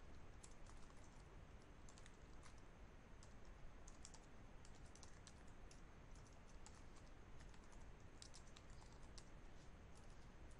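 Faint typing on a computer keyboard: irregular clusters of keystroke clicks over a low background hiss.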